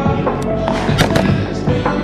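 Background music: a song with held melodic notes and a steady beat, with a few sharp hits about a second in.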